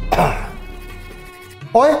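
A short cough right at the start, over background music that fades away. A man's voice speaks near the end.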